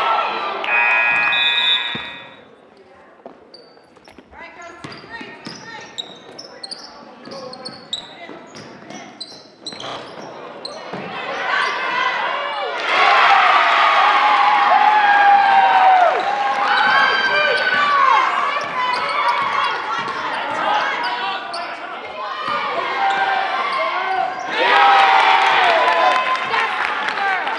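A gym scoreboard buzzer sounds for about a second and a half right at the start, ending the quarter. Then basketball play on a hardwood floor: the ball bouncing, short high sneaker squeaks, and spectators and players shouting, loudest in the second half.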